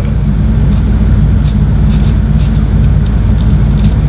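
Fairly loud, steady low background hum.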